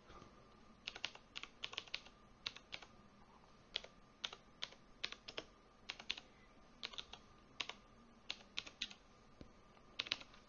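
Faint typing on a computer keyboard: irregular runs of key clicks, a few keys at a time with short pauses between.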